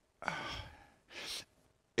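A man sighing out into a close handheld microphone, followed about a second later by a second, shorter breath.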